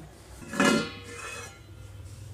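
A metal kitchen vessel knocked once about half a second in, giving a short metallic clink that rings and fades over about a second.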